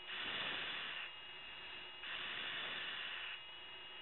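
Static hiss on a Su-35 fighter's cockpit radio channel between transmissions, stepping louder and softer every second or so.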